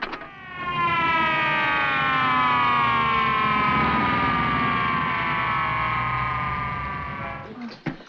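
Police motorcycle escort sirens sounding, one held wail that slowly drops in pitch and dies away near the end, with engine rumble underneath.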